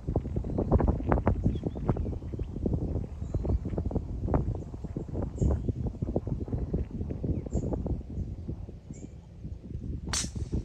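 Wind buffeting the phone's microphone: an uneven low rumble with irregular gusty jolts.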